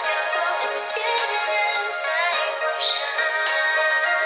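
A Chinese-language song playing, a singer's voice over instrumental backing. The sound is thin, with almost no bass.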